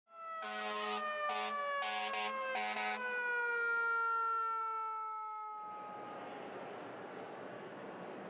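Fire truck siren winding slowly down in pitch, with four short horn blasts in the first three seconds. Steady street traffic noise takes over as the siren fades.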